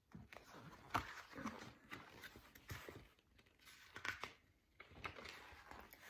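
Pages of a paperback picture book being turned and handled: faint, irregular paper rustling with a few sharper clicks.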